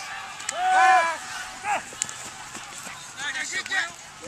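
Voices shouting across an open field during a football play: one long call about a second in, then a short call and a few scattered shouts near the end.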